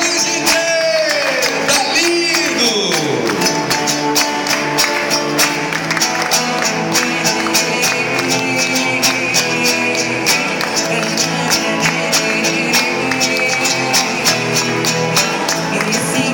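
Several acoustic guitars strumming a steady rhythm together, with a woman singing over them through a microphone in a Brazilian popular song.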